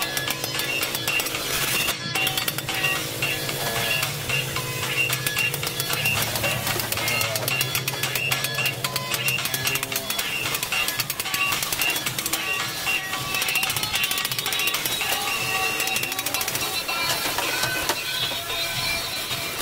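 Background music: a song with a voice singing over it.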